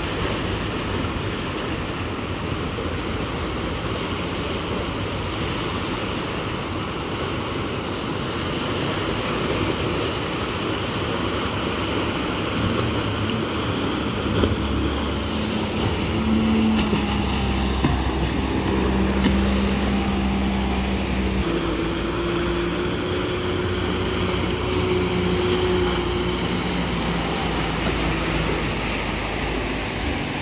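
Surf breaking and washing up the beach throughout. From about halfway through, the outboard motor of a small open fishing boat is heard running as the boat crosses the waves, its pitch stepping up and down a couple of times before it fades near the end.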